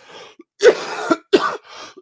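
A man coughing: a short breath in, then two harsh coughs, the first about half a second in and the second under a second later.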